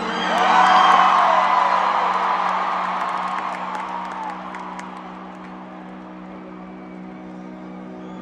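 Stadium crowd cheering and screaming, loudest about a second in and dying away over the next few seconds, over a steady held synth chord from the stage sound system.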